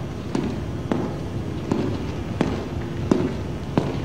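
Footsteps on a hard floor at an even walking pace, a sharp click about every 0.7 s, over a low steady hum.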